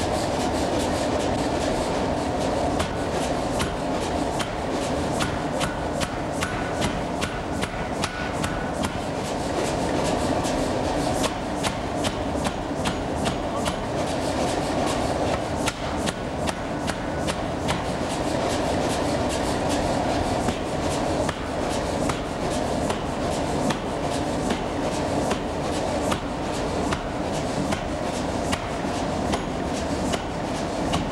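Power forging hammer striking a glowing workpiece in a rapid, regular series of blows over steady machinery noise. Each blow forge-welds a tool-steel facing onto an iron knife body.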